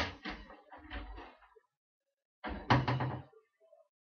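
Two clusters of knocks and clattering thumps, like a door or furniture being knocked: the first about a second and a half long at the start, the second shorter, about three seconds in.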